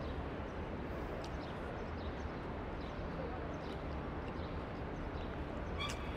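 Steady outdoor background noise: a low rumble with faint chatter of people nearby and a few faint clicks.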